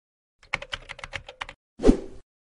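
Computer keyboard typing: about ten quick key clicks in a row, followed near the end by a single louder thud.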